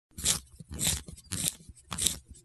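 Intro sound effect: a series of short crunches, evenly spaced at a little under two a second, four of them in turn.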